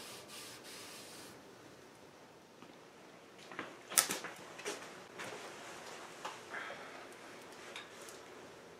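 A rag wiping wood stain onto a wooden chair rocker in quick back-and-forth strokes for about the first second. After a quieter stretch, a few scattered sharp knocks and clicks from about four seconds in.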